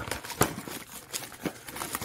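Light handling sounds of trading cards and plastic card sleeves: a few soft clicks and faint rustles, the clearest tick about half a second in.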